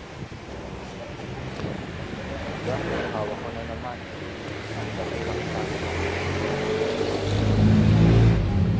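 A motor vehicle's engine on the street, getting louder and rising in pitch over the last few seconds as it comes close, with brief voices earlier.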